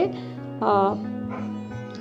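Background music with a steady low drone under a pause in the narration, and one short vocal sound a little over half a second in.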